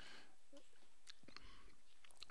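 Quiet room tone with the narrator's faint breathing and a few small mouth clicks close to the microphone.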